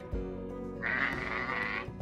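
A sheep bleats once, a raspy call about a second long starting near the middle, over background guitar music.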